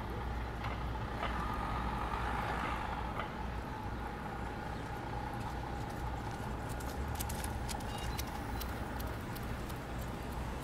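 City street traffic: a steady low rumble of passing cars and buses, with a faint steady whine through most of it and a few sharp ticks in the second half.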